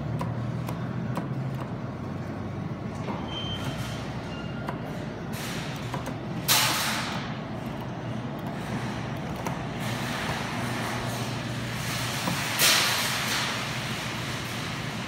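A steady low hum, broken twice by a loud hiss about six seconds apart, each hiss starting sharply and fading over about a second.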